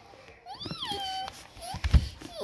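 A child's high-pitched whining cry, put on as the doll crying during the pretend ear piercing: one wail that rises, falls and holds, then a short second whimper. A loud thump near the end.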